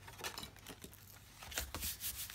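Paper rustling and a hand rubbing over it as a traveler's notebook is folded shut and pressed flat, with soft knocks that grow a little louder near the end.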